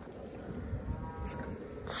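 A wolf giving a faint, brief whine about a second in.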